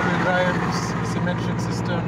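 Speech: brief fragments of conversation in a pause between sentences, over a steady low hum.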